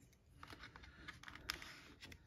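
Faint handling of a small pocketknife being slid into the pocket of a leather holster: a few light clicks and rubs, with one sharper click about one and a half seconds in.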